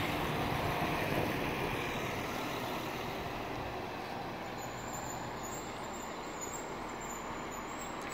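Track inspection railcar rolling slowly along the platform as it draws to a stop, its running noise steady with a faint low hum and gradually getting quieter.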